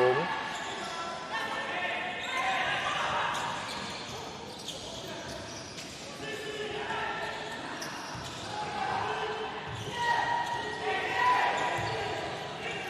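Indoor futsal play heard across an echoing sports hall: the ball being kicked and bouncing on the court, with players' and spectators' voices in the background.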